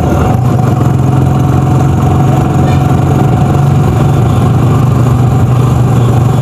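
Steady engine drone and road noise from a vehicle cruising at an even speed, with a faint thin whine held above the drone.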